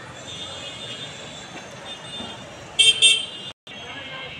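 Two short vehicle horn honks in quick succession about three seconds in, over the steady din of a congested street with fainter horns in it.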